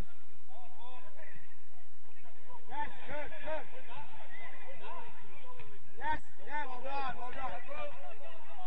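Players' voices shouting and calling across the pitch during play, with one sharp knock about six seconds in.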